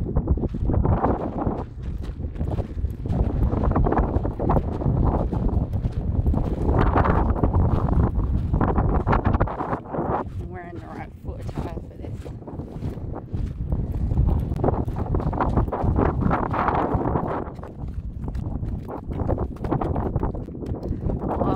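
Strong wind buffeting a phone's microphone, a deep rumble that swells and dips with the gusts.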